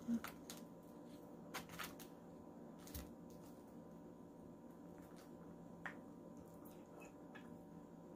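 Quiet eating sounds: a few faint, scattered clicks and soft sounds of chopsticks and a fork picking food from takeout containers, over a faint steady hum.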